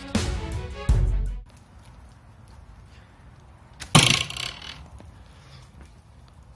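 Background string music that stops about a second and a half in, then a single sharp arrow impact about four seconds in, with a short rustling tail.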